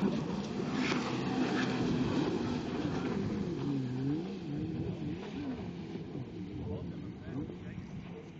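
Jet ski engines running at speed, their pitch rising and falling, growing fainter toward the end as they pull away.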